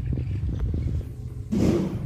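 A steady low rumble, with a man's short drawn-out voiced 'ah' near the end.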